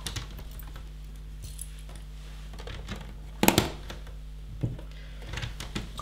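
Plastic LEGO bricks clicking and clattering as pieces are picked from a pile and pressed onto the model, in scattered light clicks with one louder snap about three and a half seconds in and another about a second later.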